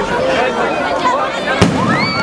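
An aerial firework shell bursting with one sharp bang about a second and a half in, over a crowd chattering.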